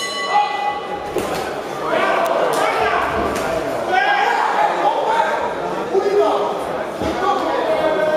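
Voices shouting in a large echoing hall during an amateur boxing bout, with occasional short thuds.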